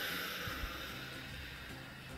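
A woman's long out-breath, a soft hiss that fades away over about a second and a half, over quiet background music.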